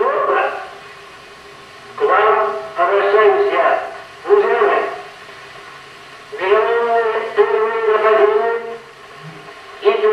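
Joseph Stalin's 1941 radio address, an old recording of a man speaking Russian slowly in short phrases, with pauses of a second or more between them.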